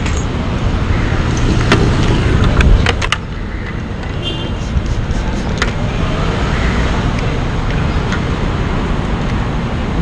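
Steady low rumble of vehicle engines and traffic, with a few sharp clicks in the first six seconds.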